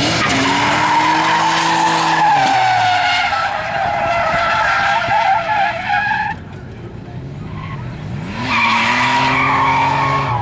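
Nissan Z31 300ZX drifting: the tires squeal under the engine held at high revs, and the engine note drops off about two and a half seconds in. The squeal stops about six seconds in. Then the engine revs up again and the tires squeal once more near the end.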